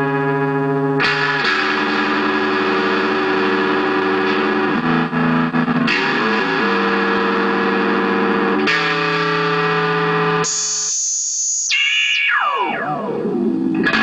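Electric guitar played through a Moog MF-102 ring modulator and overdrive pedals, with sustained notes and chords that change every few seconds. Near the end a high tone slides steeply down in pitch.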